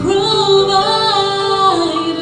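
A woman singing a gospel song into a handheld microphone, holding a long note that steps down in pitch near the end.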